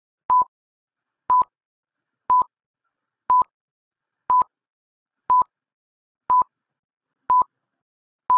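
Stopwatch countdown-timer sound effect: eight short, identical high beeps, evenly spaced at one a second, ticking off the seconds given to solve the riddle.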